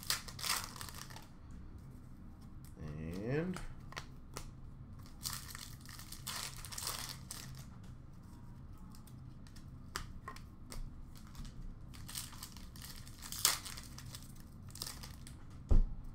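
Plastic trading-card pack wrapper crinkling and tearing open, with cards rustling and being flipped by hand in irregular short bursts.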